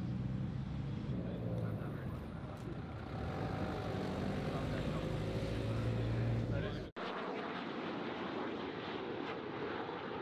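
A low, steady engine hum with voices in the background, broken by a sudden cut about seven seconds in, after which a thinner outdoor background follows.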